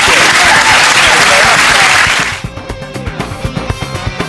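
Studio audience applauding, with music underneath. About two seconds in the applause cuts off sharply, leaving background music with a steady beat.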